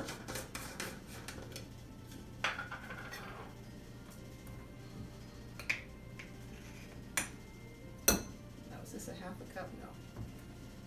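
Brown sugar being scooped out of a large glass jar with a metal utensil: a rustle of sugar and a few sharp clinks of metal against the glass, the loudest about eight seconds in.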